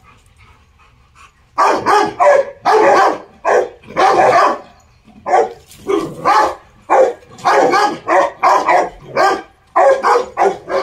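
Rottweiler barking aggressively at an ox in quick succession, about two barks a second, starting about one and a half seconds in.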